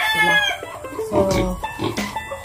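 A rooster crowing, one long call that ends about half a second in.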